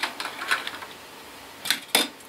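A few short plastic clicks and taps from Lego pieces handled on a tabletop. The loudest two come close together near the end, as a small Lego car is set down on the table.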